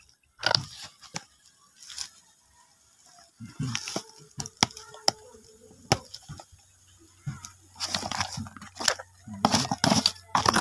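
A plastic courier mailer bag being handled, giving irregular sharp crinkles and crackles with quiet gaps between them.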